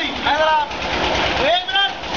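Water pouring steadily out of a wall pipe into a bathing tank, a constant rush. Men's voices call out over it twice, and a low regular throb runs underneath.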